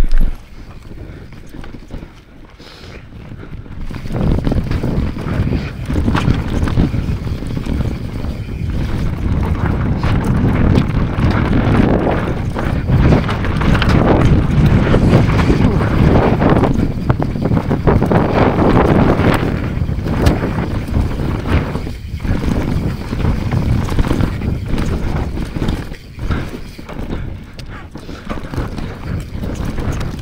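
Mountain bike running fast down a rough dirt trail: tyres rolling and the bike rattling over roots and stones, with wind buffeting the microphone. Quieter for the first few seconds, then louder and busier through the middle, easing off now and then toward the end.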